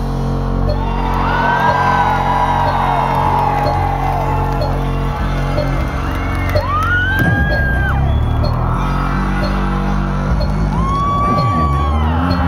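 Loud live electronic dance music from a concert PA, with a steady deep bass line and long whooping calls rising over it three times: near the start, about halfway, and near the end.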